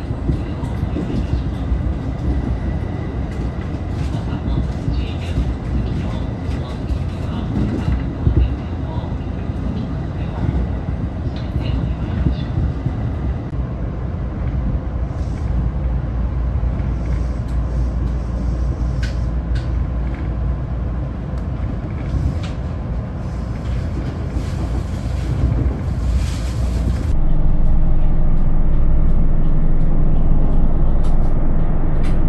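A train running on rails, heard from inside: a steady rumble with occasional clicks. About three seconds before the end it gives way to the louder, steadier running of a bus engine, heard from inside the bus.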